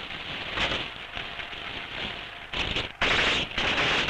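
Small-arms fire during a field exercise: a dense crackle of rapid shots that grows much louder about three seconds in.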